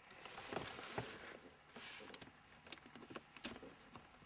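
Faint, irregular rustling with a few light clicks: a handheld camera being moved around inside a car's cabin.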